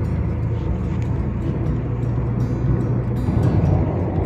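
Steady low rumble of a car driving at highway speed, heard from inside the cabin.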